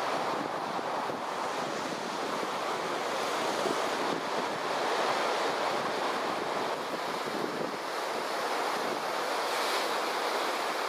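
Pacific Ocean surf washing over a rocky shore in a continuous rush, swelling a little louder as waves break and surge through the rocks.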